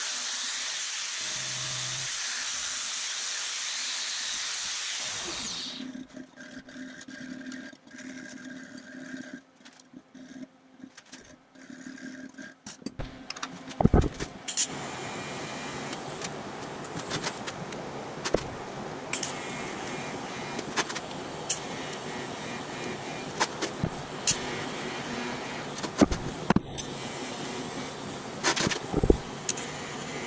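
An angle grinder runs steadily on steel for about five seconds, then spins down. After a quieter stretch, a TIG welding arc hisses steadily from about fourteen seconds in, with scattered sharp clicks.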